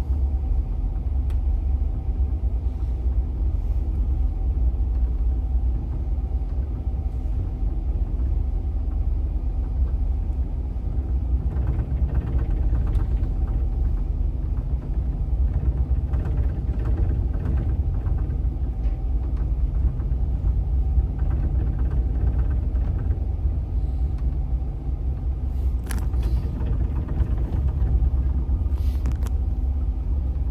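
Towboat's diesel engines running steadily under way, pushing a tow of barges: a constant deep drone with a steady hum over it.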